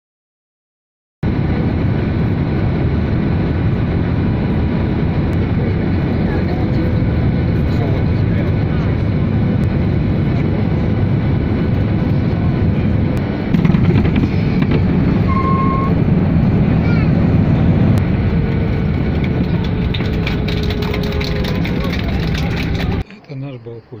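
Jet airliner cabin noise heard from a window seat near the ground: engines and rushing air run loud and steady. The noise grows louder and deeper about halfway through, then cuts off suddenly near the end.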